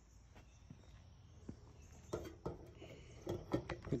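Faint, scattered clicks and light knocks of handling and footsteps.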